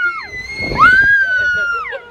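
Long, high-pitched screams of excitement from a woman and a young girl on a Ferris wheel ride: one scream falls away just after the start, and another rises about a second in, is held, and drops off near the end.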